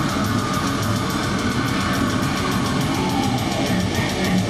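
Death metal band playing live: heavily distorted guitar and bass riffing over fast, driving drums with rapid, evenly spaced cymbal strokes, loud and dense throughout.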